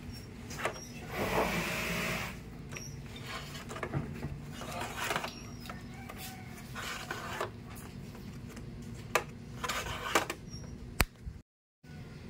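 Rustling, scraping and light clicks as the communication wire is handled and fed into the plastic casing of a split-type aircon indoor unit. There is a louder rustle about a second in and a sharp click near the end, after which the sound briefly cuts out.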